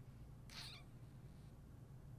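Near silence: steady low room hum, with one brief faint hissy sound about half a second in.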